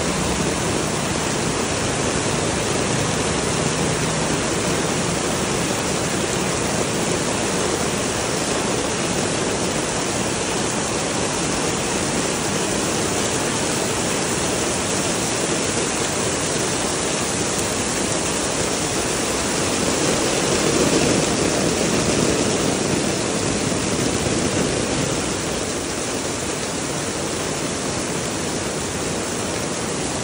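Heavy rainstorm: a steady hiss of rain pelting the paved lane, growing a little louder about twenty seconds in.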